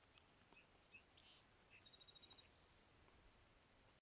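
Near silence, with faint scattered bird chirps and one short rapid trill a little after two seconds in.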